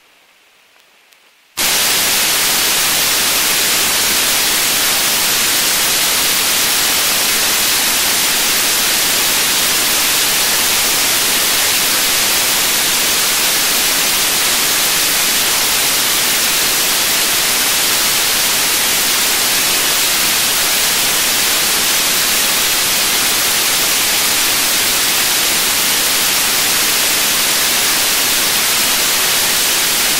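Loud, steady static hiss that cuts in abruptly after a brief quiet gap about a second and a half in. It comes from the old analogue interview tape, with no speech on it.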